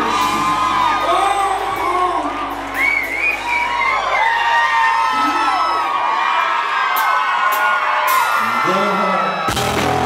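Live band playing with a man singing at the microphone and crowd whoops and cheers. About six seconds in the bass drops out, and the full band comes back in just before the end.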